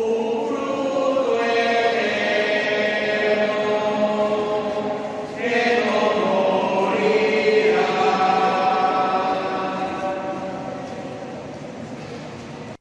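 A group of voices singing a slow hymn or chant in long, held notes, with a short break between phrases about five seconds in, fading toward the end.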